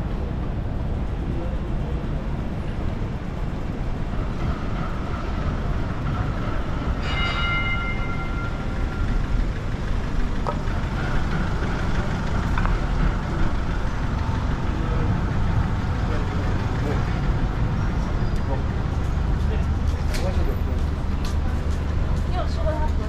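City street traffic rumbling steadily, with a brief ringing tone about seven seconds in that fades over a second or so, and a deeper engine drone growing near the end as a vehicle comes close.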